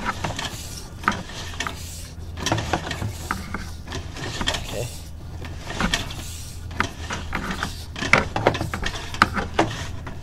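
Sewer inspection camera's push cable being fed down the drain line, with irregular clicks and rattles over a steady low hum.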